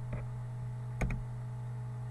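Computer mouse clicks: a faint click just after the start and a sharper one about a second in, over a steady electrical hum.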